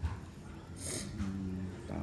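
A person's voice: a short breathy hiss about a second in, then a low, steady hummed "mmm" lasting under a second.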